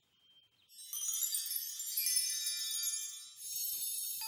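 Cartoon magic-wand sparkle effect: a high, shimmering twinkle of many chime-like tones that begins about a second in, breaks off briefly near the end and starts again.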